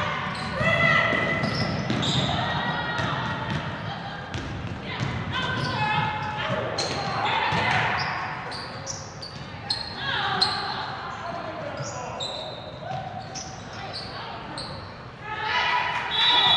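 Live basketball game sound in an echoing gym: a ball bouncing on the hardwood, sneakers squeaking in short, high-pitched chirps, and players and coaches calling out.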